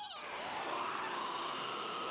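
Anime soundtrack at low level: a cartoon character's high, wavering cry near the start, then a soft noisy rush with a faint thin tone.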